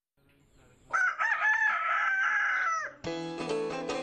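A single drawn-out animal call of about two seconds that starts about a second in, wavering in pitch and dropping off at the end. Plucked-string music begins right after it, about three seconds in.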